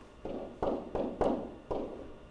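Pen stylus knocking and rubbing on an interactive display while handwriting: about five short strokes, each starting with a sudden knock that fades within a fraction of a second.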